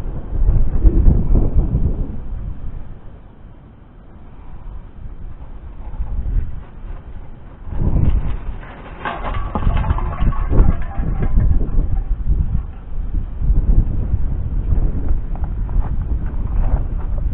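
Wind buffeting the microphone in gusts that rise and fall, with a louder, scratchier stretch about eight to eleven seconds in.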